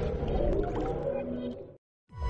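The decaying tail of an electronic logo-sting jingle: drawn-out synth tones with a swirling, reverberant wash that fade away and cut to silence shortly before the end.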